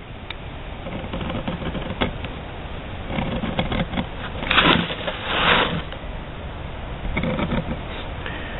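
Utility razor knife scoring leather along marked lines: a series of short scratchy cutting strokes, the two longest and loudest a little past halfway. The shallow score lines guide the later thinning of the leather.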